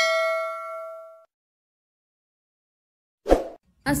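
Notification-bell "ding" sound effect for the bell icon being clicked: one struck chime that rings out and fades away within about a second. A short thump comes just after three seconds in.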